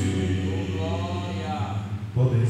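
A man's voice singing one long held low note through a microphone, its pitch bending slightly near the end.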